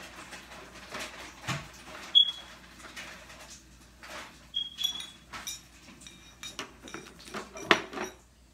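Utensil tapping and scraping in a glass jar of minced garlic, with scattered clicks and knocks of handling. Two short ringing clinks stand out, the louder about two seconds in, and a sharp knock comes near the end.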